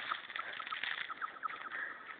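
Faint outdoor background noise with a scatter of small, high, short chirps.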